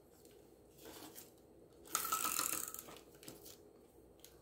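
Double-sided tape and paper being handled: a soft rustle, then about two seconds in a brief scraping rustle as the tape's backing is worked off the paper sheet.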